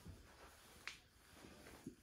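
Near silence in a small room, with one faint sharp click about a second in.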